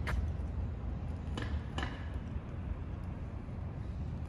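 Steady low outdoor rumble of a street at night, with a sharp click at the start and two softer clicks about a second and a half in.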